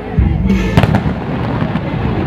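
Fireworks going off with music playing: a deep boom about a fifth of a second in, then a cluster of sharp bangs just under a second in.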